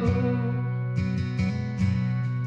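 Karaoke backing track playing instrumentally between sung lines: guitar music over a regular low bass line and beat, through a bar's PA.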